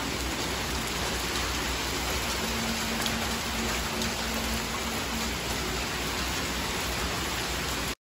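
Rain just beginning to fall, a steady, even hiss of rain on the yard.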